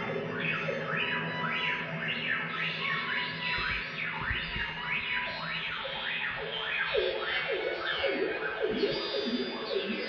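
Improvised experimental electronic music: effects-laden tones sweep up and down in pitch about twice a second over a steady low drone, the sweeps moving into a lower register in the second half.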